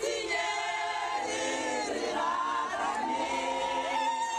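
A choir singing, holding long notes that glide from one pitch to the next.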